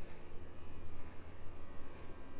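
Steady low outdoor background rumble with a faint even hiss, with no distinct events.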